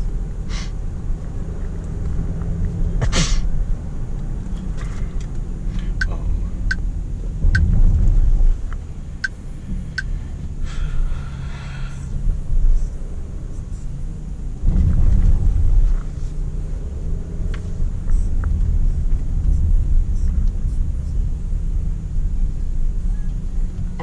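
Cabin sound of a Range Rover Sport SDV6's 3.0-litre V6 diesel driving slowly through town: a low engine and road rumble that swells twice. A sharp noise comes about three seconds in, and the turn indicator ticks about once every three-quarters of a second for a few seconds in the middle.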